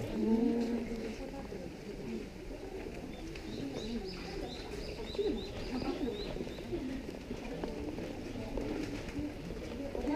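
Murmur of people talking, with birds calling over it: a run of short high chirps in the middle.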